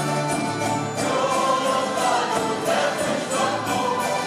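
A Portuguese tuna ensemble of acoustic guitars and mandolins strumming together in a steady rhythm while the members sing in chorus.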